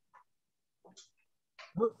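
Near silence with a few faint short clicks, then a man's voice begins speaking near the end.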